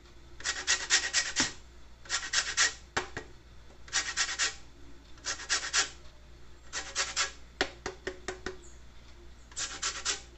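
A lime rubbed against a stainless steel box grater to zest its peel: about seven bursts of quick rasping strokes with short pauses between them.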